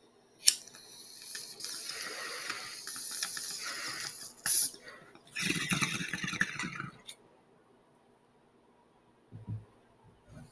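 Glass water bong bubbling as a hit is drawn through it. A sharp click comes about half a second in, then about three seconds of steady fizzing bubbling, a brief loud hiss, and a deeper, louder gurgling burst for about a second and a half before it falls quiet.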